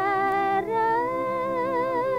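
A woman singing a slow Khmer oldie, holding long notes with vibrato. Her voice steps up to a higher held note about half a second in.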